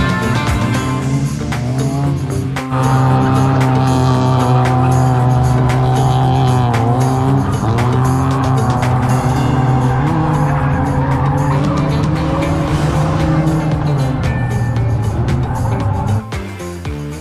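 A drift car's engine held high in the revs, its pitch wavering up and down as the throttle is worked, with tyre squeal from the car sliding sideways.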